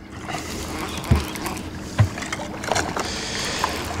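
Open-water noise around a small fishing boat, steady throughout, with two short low thumps about a second and two seconds in.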